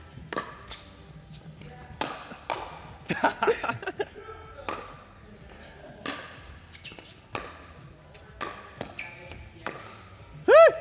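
Pickleball rally: a plastic ball struck back and forth with sandpaper-faced paddles and bouncing on the court, giving a string of sharp knocks about one a second.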